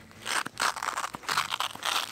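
JS Design Rhombus sling bag being handled and pulled open: a run of rustling and scraping of its fabric, with a few small sharp clicks.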